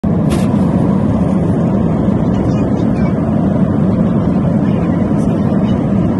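Steady cabin noise of a jet airliner in flight: a loud, even, low rush of engine and air noise that holds unchanged throughout.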